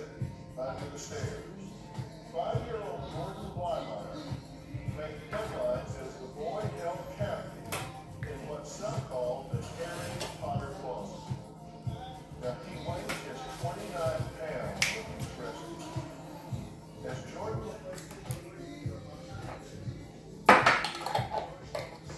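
A song with singing plays in a small room throughout, with scattered small clicks and one louder knock near the end.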